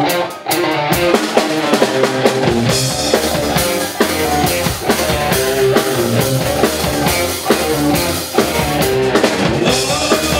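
A live band plays an up-tempo number on electric guitar, keyboard and drum kit, with a brief break about half a second in before the full band comes back in.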